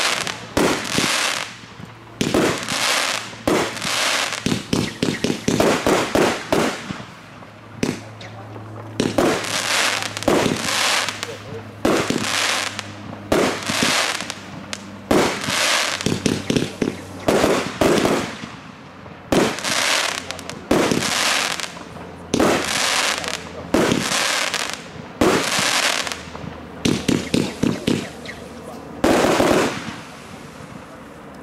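A 33-shot consumer firework battery (cake) firing shot after shot, about one a second, each a sharp bang followed by a fading hiss from the star burst.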